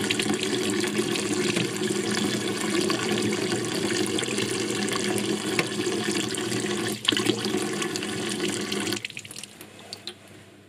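Tap water running steadily into a stainless-steel sink, then shut off about nine seconds in.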